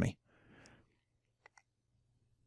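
A spoken word ending, then a pause: a faint intake of breath, and two faint small clicks close together about a second and a half in.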